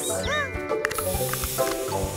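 Cartoon sound effect of a puff of smoke: a steady hiss that comes in about a second in, over background music. A few short squeaky cries come before it.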